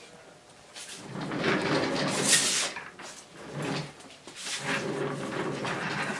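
Gloves being pulled onto the hands: irregular bursts of rubbing and stretching, loudest with a sharp rustle about two seconds in.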